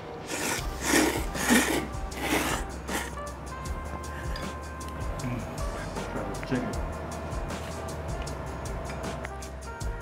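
Background music, with several short, noisy slurps of ramen noodles in the first three seconds.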